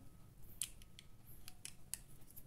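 A few faint, light clicks and taps as hands handle a small cold-porcelain clay figurine and a wooden toothpick.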